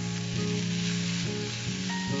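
Chopped banana flower and onion sizzling steadily as they fry in a kadai, stirred with a wooden spatula. Soft background music with long held notes plays underneath.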